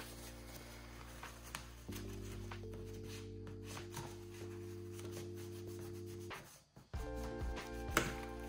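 Soft, irregular scratchy rubbing on a paper or card sheet, under background music playing chords that cut out briefly near the end.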